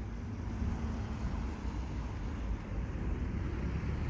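Steady low rumble of distant road traffic across a car park, with wind buffeting the phone's microphone.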